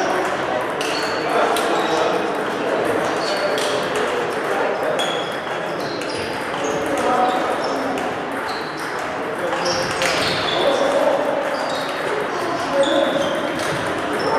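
Table tennis balls clicking off bats and tables at several tables at once, an irregular rapid patter of short pings in a large hall, with indistinct voices underneath.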